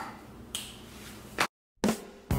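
Sharp clicks, one about half a second in and another just before a brief drop to dead silence. A third click comes near the end.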